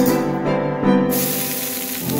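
Background music with strings and piano. About a second in, a steady hiss of water sizzling on a hot dosa tawa comes in.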